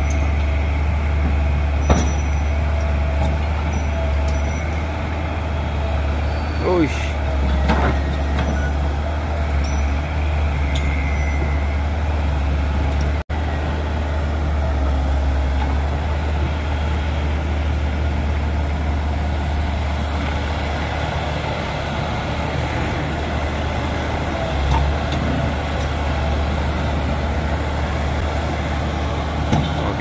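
Crawler excavator's diesel engine running steadily as the machine works and tracks, with a few brief squeals about seven to eight seconds in.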